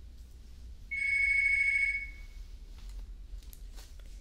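A single high-pitched warbling electronic ring, about a second and a half long, starting about a second in and fading out, over a steady low hum.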